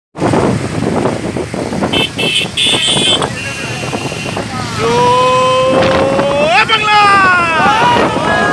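Many motorcycles running together in a procession, with short high beeps about two to three seconds in. From about five seconds in, men shout a long drawn-out call that rises slowly in pitch, and several voices overlap near the end.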